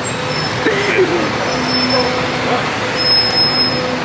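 Diesel engine of a Mercedes-Benz coach running steadily at the kerb, a continuous engine rumble and hum.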